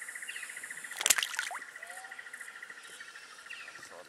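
An insect trilling steadily, a rapid pulsing high note, with a few short bird chirps over it. One brief sharp noise about a second in is the loudest sound.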